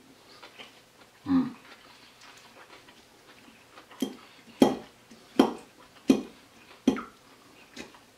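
A brief 'mmm' from a person tasting food about a second in. Then, from about halfway, a metal fork tossing salad in a ceramic bowl, knocking against the bowl six times, a little under once a second.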